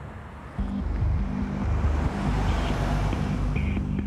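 Road noise inside a moving car's cabin; about half a second in, background music with low, sustained bass notes comes in over it.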